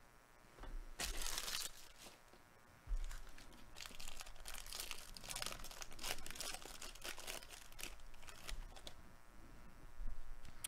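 Foil wrapper of a 2022 Bowman Baseball Jumbo card pack being torn open and crinkled by hand: a short burst about a second in, then a run of crackling from about three seconds on.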